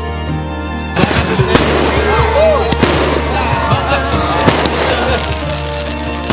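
Fireworks start going off about a second in, a dense run of bangs and crackles, with a crowd shouting and cheering over a steady music track.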